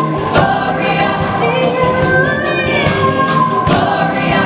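Gospel choir singing with a live band, held sung notes over a steady beat of sharp percussion hits, about three a second.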